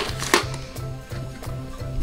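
Thin plastic carrier bag rustling and crinkling, with plastic toys knocking, as a hand rummages through it. Quiet background music with a steady beat runs underneath.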